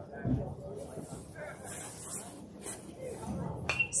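Distant voices chattering around a baseball field, with a single sharp pop near the end as the pitched ball arrives at the plate.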